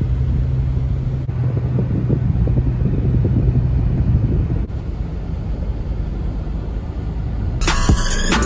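Steady low rumble of a car driving, heard from inside the cabin: engine and road noise with a low hum that drops away about halfway through. Music with drums cuts in just before the end.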